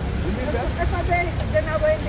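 Voices talking over the steady low rumble of street traffic, with a double-decker bus standing close by.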